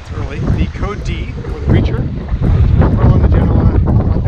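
Wind buffeting the microphone in a steady low rumble, with a man's voice talking over it in snatches.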